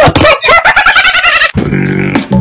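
Bird-like squawking: a fast run of loud, wavering high calls, then a lower held note about a second and a half in.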